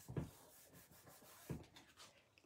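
Hands rubbing and pressing a glued cardstock card flat against a cutting mat to burnish it: faint paper rubbing, with two soft thumps, one just after the start and one about a second and a half in.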